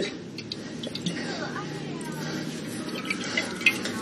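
Olive oil glugging faintly from a tipped glass bottle as it is drizzled, with a few light clicks.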